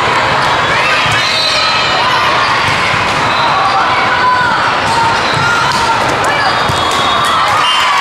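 Indoor volleyball rally: the ball being struck and hitting the court now and then, over constant crowd chatter and shouts in a large hall.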